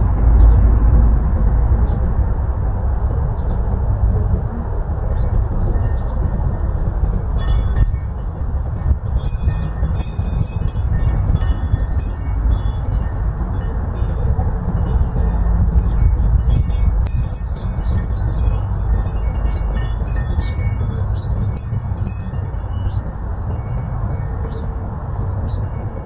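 Wind buffeting the microphone with a steady low rumble. From about eight seconds in, wind chimes ring with scattered, irregular high tinkling notes.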